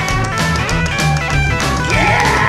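Psychobilly band playing an instrumental passage: guitar over a steady drum beat and a walking bass line, with no vocals.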